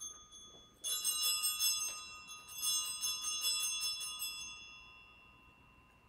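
Altar (sanctus) bell rung at the elevation of the chalice, marking the consecration of the wine. It is shaken in two rapid rounds of ringing, the first about a second in and the second about two and a half seconds in, and the ringing dies away toward the end.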